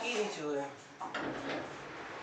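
A short voice-like call, then a single sharp knock about a second in from the large laminated board being handled on the workshop floor.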